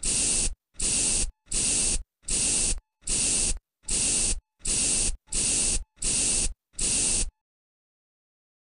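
Pump spray bottle spraying in a run of ten short hissing spritzes, each about half a second long and evenly spaced, a little more than one a second, stopping shortly before the end.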